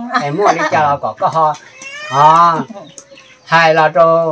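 An elderly man talking in Hmong, in lively bursts with a long drawn-out syllable in the middle and a short pause near the end.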